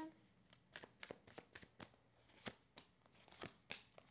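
A deck of tarot cards being shuffled by hand, with a few cards drawn and laid down on a table: faint, irregular soft flicks and taps.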